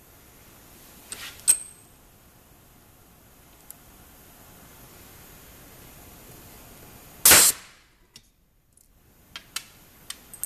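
Pneumatic ring marking machine firing its internal hammer once, about seven seconds in: a single short, loud blow that drives a steel letter stamp into a stainless steel ring. Before it and near the end, light metallic clinks of steel hand stamps being handled, one with a brief ringing tone.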